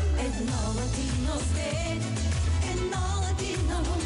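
Live pop song: a woman singing lead into a microphone over a full band with a steady, regular bass beat.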